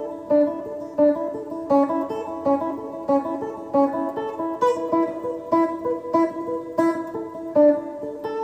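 Electric guitar in a clean tone playing a repeating single-note exercise on the high E string, fretted notes alternating with the open string in a steady looped phrase.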